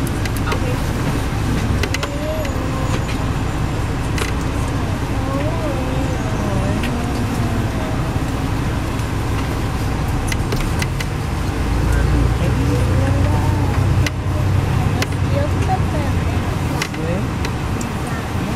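Inside a moving MCI D4000 coach bus: steady low engine drone and road noise, with indistinct passenger chatter over it. The low drone grows louder for a couple of seconds about two-thirds of the way through.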